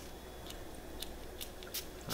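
Four faint, short, high-pitched hisses or clicks from a glass cologne spray bottle being pumped and handled. The last, near the end, is the loudest.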